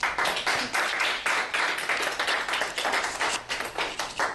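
A small audience applauding, a dense patter of hand claps that thins out and dies away near the end.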